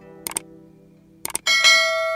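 Subscribe-button animation sound effects: two quick double mouse clicks about a second apart, then a bright bell chime ringing out about one and a half seconds in. Under them the last note of a plucked-string outro tune fades out.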